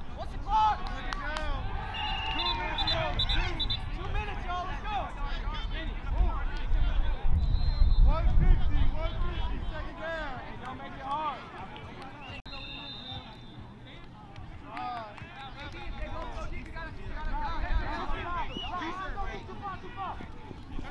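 Sideline chatter: several people talking at once in the open, with a low rumble about six to nine seconds in.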